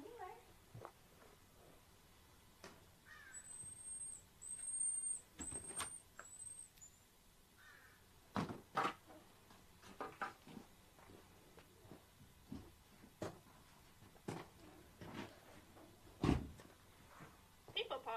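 Marmoset giving a run of about five short, high-pitched whistled calls a few seconds in, amid scattered light knocks and a louder thump near the end.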